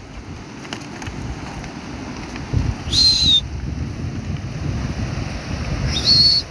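Wind rumbling on a phone microphone, with faint crunching steps on river stones and one short high whistle about three seconds in.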